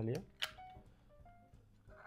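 A single sharp click about half a second in as a plastic box cutter is handled at a shrink-wrapped game box, over quiet background music of short plucked notes.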